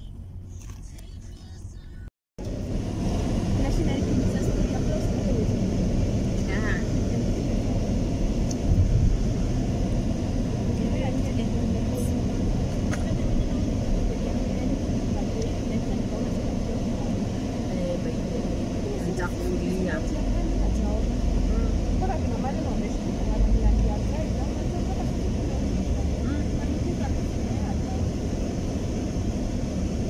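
Steady low rumble of car cabin noise, engine and road, inside a car. A muffled voice is faintly mixed in under it.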